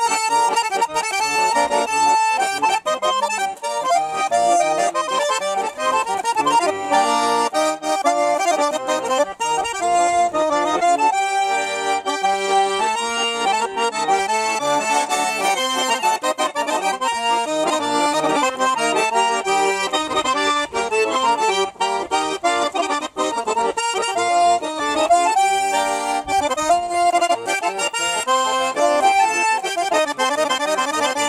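Nizhny Novgorod garmon, a Russian button accordion, playing a folk-tune medley without a break.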